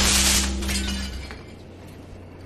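The tail of a glass-shattering crash, fading out over about a second and a half, over low steady tones.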